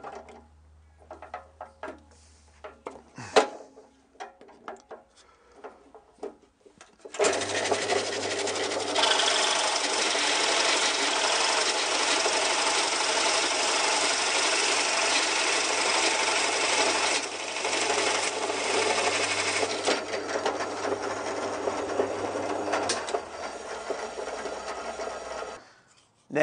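Drill press boring into a wooden template with a Forstner bit. The loud, steady cutting noise starts about seven seconds in and stops sharply near the end, with a couple of brief dips along the way. Before it come a few light knocks and clicks of handling.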